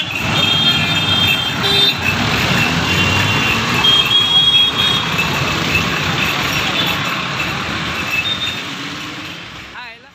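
Busy street traffic: motorcycles and auto-rickshaws passing, with many short horn toots, fading out near the end.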